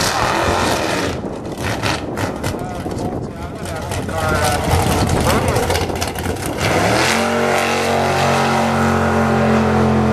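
Drag-race pickup's engine at the starting line, running rough and noisy for the first several seconds. About seven seconds in it sweeps quickly up in pitch, then holds a steady, even tone as the truck pulls away down the strip.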